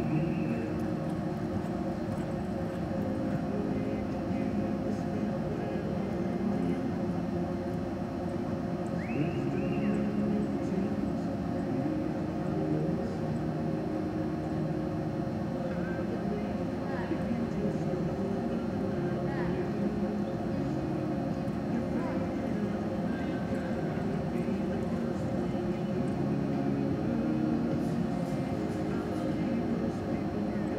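Indistinct murmur of voices with a steady hum beneath it, in a large indoor arena.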